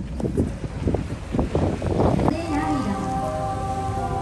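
Wind rushing over a phone microphone while riding in the open bed of a pickup truck, with brief voices. A little over halfway through, music comes in with held chords.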